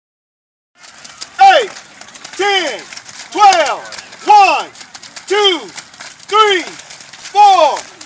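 A single voice shouting a short one-word call in a steady cadence, about once a second, seven times, each call rising then falling in pitch. It is the kind of rhythmic call used to pace a youth football drill. The first second is silent.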